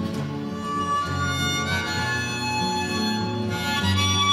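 Instrumental folk music: a harmonica playing held notes over a moving bass line, with no singing.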